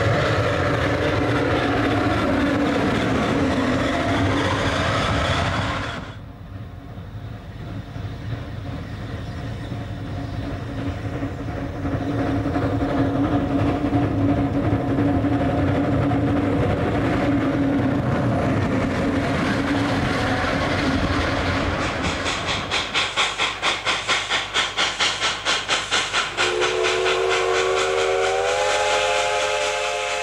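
Narrow-gauge steam locomotives running with trains, sounding long steady whistle blasts. Later the exhaust beats at about four a second as a locomotive works past. Near the end a multi-note chime steam whistle sounds, sliding upward in pitch.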